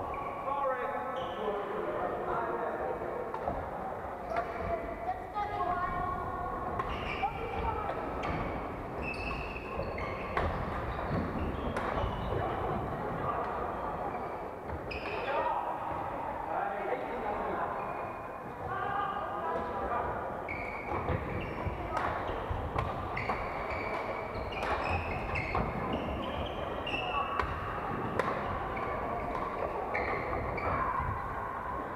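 Several badminton games in a large sports hall: frequent sharp hits of rackets on shuttlecocks and players' footfalls on the wooden court, over continuous chatter of voices.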